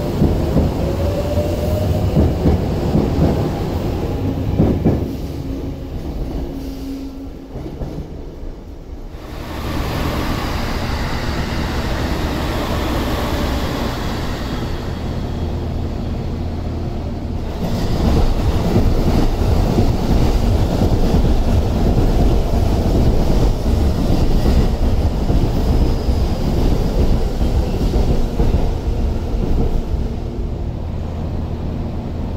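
Electric commuter train pulling away, its motor whine rising in pitch over the first couple of seconds. Then the steady running noise of a moving train heard from inside the car, wheels on rails rumbling, stepping louder about 18 seconds in.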